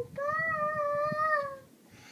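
A young girl singing one long, high held note without accompaniment, wavering slightly and fading out about a second and a half in.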